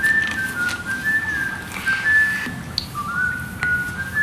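A tune whistled one clear note at a time, the notes held briefly and stepping up and down in pitch, with a few faint clicks.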